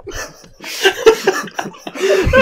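Laughter in short, breathy bursts, starting about half a second in.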